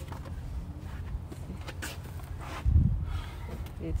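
Cargo being shifted in an open car boot: light rustling and clicks, with a dull thump a little under three seconds in, over a steady low rumble.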